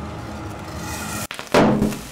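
Liquid chlorine reacting violently with liquid ammonia: a steady hiss, a sudden break, then a loud burst about one and a half seconds in that quickly fades.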